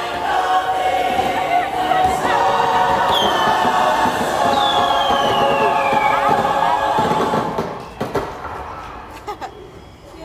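Ride soundtrack: a chorus of voices singing over music, with two high falling glides about three and four and a half seconds in. It fades down from about seven and a half seconds.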